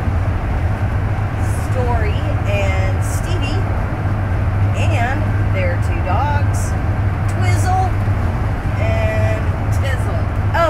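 A steady low drone of road and engine noise inside a motorhome's cabin while it is driving, under a woman's voice.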